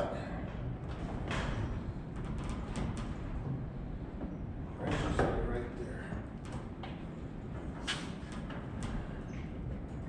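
Scattered clicks and knocks of hands and a tool working on a corn planter row unit's plastic seed meter housing, as the meter is being removed.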